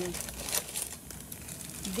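Plastic zip-top bag and the catheter packaging inside it crinkling as they are handled, with a sharper crackle about half a second in.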